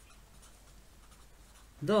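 Felt-tip marker writing a word on notebook paper, faint strokes of the tip across the page.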